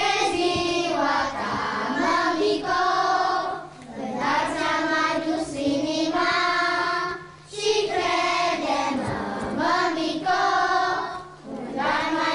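A group of young children singing a song together, in phrases of about four seconds with short breaths between them.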